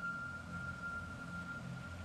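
A single steady, high pure tone held for about two and a half seconds and stopping shortly before the end, over a low steady hum.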